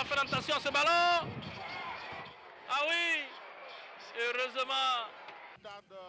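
Live football match commentary: a man's voice calling out in a few drawn-out exclamations, with stadium crowd noise underneath.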